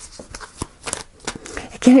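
A deck of oracle cards being shuffled by hand: an uneven run of short, crisp card strokes, about four or five a second. A woman's voice starts near the end.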